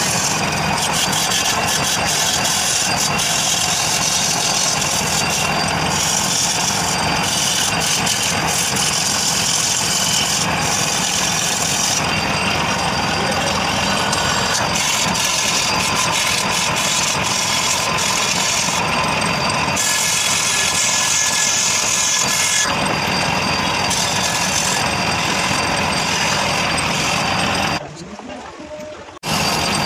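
Wood lathe running with a turning chisel cutting a spinning wooden leg: a steady motor hum under a hissing scrape that comes and goes as the tool meets the wood. The sound cuts off sharply at the very end.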